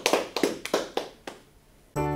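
A small audience applauding, a few people clapping, dying away about a second and a half in.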